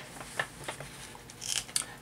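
Soft paper rustling and faint crinkles as a torn manila envelope and the letter inside it are handled, with a few light clicks and a slightly busier rustle near the end.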